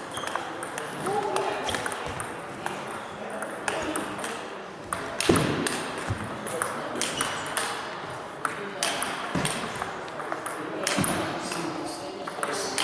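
Celluloid-style table tennis ball clicking sharply off bats and table tops in irregular runs of hits, including ball bounces from neighbouring tables. One hit about five seconds in is louder than the rest.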